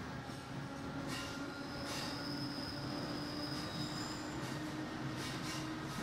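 Berlin S-Bahn electric train running along the elevated viaduct, heard from inside the carriage: a steady rumble of wheels on rails. About two seconds in, a high, thin wheel squeal sets in and lasts about two seconds, with a couple of sharp clicks just before it.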